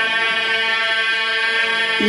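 A man's voice holding one long, steady chanted note of a mourning recitation through a loudspeaker system, with echo.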